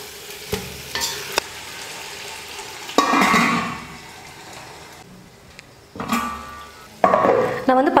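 Metal ladle stirring and scraping chicken in masala gravy in a stainless steel pot while the gravy sizzles, with a few light clicks of the ladle against the pot in the first second and a half. A louder clatter comes about three seconds in, and stirring picks up again near the end.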